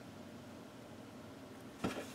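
Quiet room tone, with one brief click shortly before the end.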